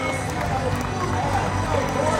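Indistinct voices of a crowd talking, with no clear words, over a steady low hum.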